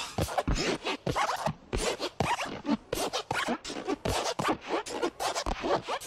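Logo jingle audio chopped up by editing effects into a rapid, stuttering run of short scratchy fragments, about four or five a second, with brief pitched snatches among them.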